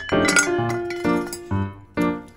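Metal saucepan lid clinking against the pot as it is lifted off, a few sharp clinks near the start, over piano background music.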